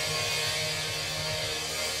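A live rock band's amplified instruments holding a steady, sustained wash of sound with amplifier hum underneath, no drum beats standing out.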